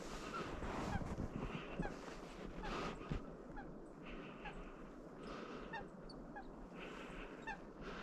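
Waterfowl calling: a series of short honking calls repeating every second or so.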